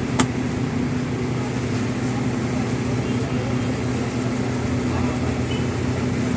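A steady low mechanical hum with a single sharp click just after the start, and faint voices near the end.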